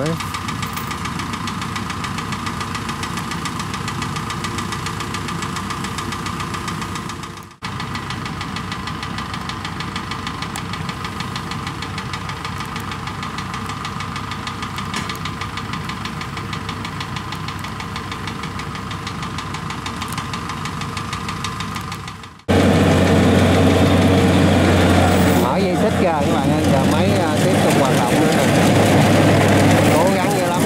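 Kubota DC-75 PLUS combine harvester's diesel engine running steadily. The sound cuts off abruptly twice; after the second cut it comes back louder, with a strong low hum.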